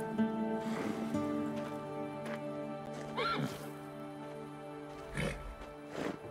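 Film score of sustained, slow-moving notes, with a horse whinnying once about three seconds in and a short breathy horse sound near the end.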